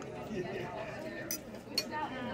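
Background chatter in a restaurant with two sharp clinks of tableware, the second and louder one near the end.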